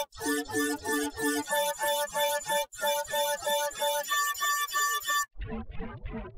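Electronic music with a fast beat and short repeating synth notes. It breaks off abruptly about five seconds in, and a different, bass-heavy passage takes over.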